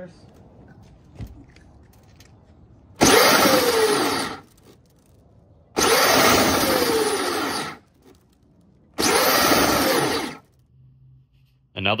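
Modified Power Wheels car's electric drive motors spinning its raised rear wheels up three times, each run rising in pitch and then falling back as the 3D-printed mechanical brake stops the wheels.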